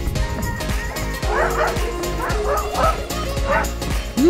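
A dog barking in a quick run of about six short yelps, starting a little over a second in, over background music with a steady beat.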